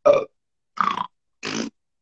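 Three short, throaty vocal noises from a person, each under a third of a second and about half a second apart, grunt- or burp-like rather than words.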